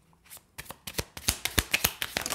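A deck of cards shuffled by hand: a quick run of short card slaps and flicks, about five a second, starting about half a second in.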